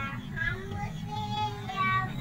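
A child's high-pitched voice singing a few short notes, the last one the loudest, over a low rumble of background crowd and traffic noise.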